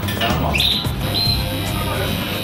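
Background music, with a caged bird chirping: a quick rising chirp about half a second in and a shorter high note just after a second.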